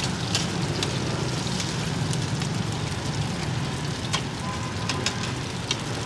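Cubes of taro-flour cake sizzling and crackling in hot oil in a wide flat frying pan, with short clicks and scrapes as a metal spatula and spoon turn them against the pan.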